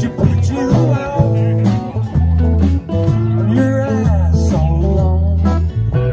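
A live band playing amplified: an electric bass holds low notes under electric guitars, with a steady beat of percussive hits.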